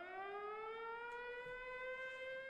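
Air-raid siren sound effect winding up, its pitch rising and then holding a steady wail.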